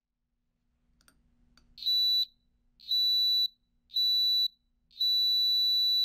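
Electronic beeper sounding a high-pitched tone four times, about a second apart, starting nearly two seconds in; the last beep is held longer. Each beep marks a virtual encoder line detected by the magnetic angle sensor.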